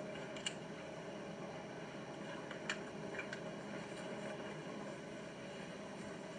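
A faint steady hum with a few short, faint clicks and knocks, as a plastic power plug is handled and pushed into its socket.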